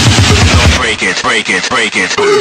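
Electronic dance music break in a DJ mix: a rapid run of sharp percussive hits gives way about a second in to repeated swooping synth or vocal effects, as the heavy beat drops out before it comes back.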